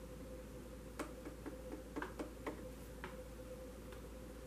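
Tarot cards being handled: a quick, uneven run of about eight light clicks starting about a second in and lasting about two seconds, over a faint steady hum.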